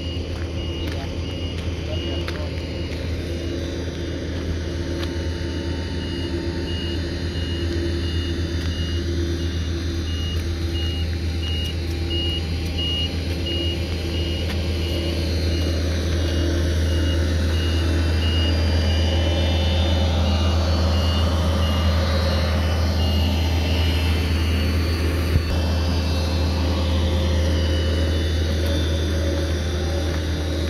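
Compact tractor engine running steadily, growing a little louder after the midpoint, with a reversing alarm beeping over and over until a few seconds before the end.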